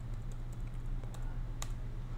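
Computer keyboard keys clicking a few separate times as a stock ticker is typed in, over a steady low hum.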